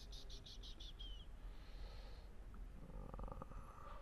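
A quick run of about six light, rapid clicks in the first second, keys pressed in succession to page through presentation slides. Then faint room tone and a short hesitant 'uh' near the end.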